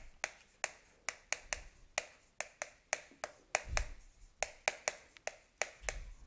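Chalk writing on a blackboard: a run of short, sharp, irregular taps and clicks, about three a second, as the chalk strikes the board stroke by stroke.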